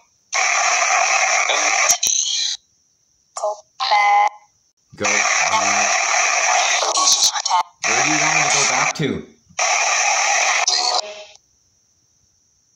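Necrophonic ghost-box app playing through a phone: abrupt bursts of white noise and chopped radio-like voice fragments smeared with echo and reverb, about five bursts that start and stop sharply. A faint steady high whine sits in the gaps between bursts.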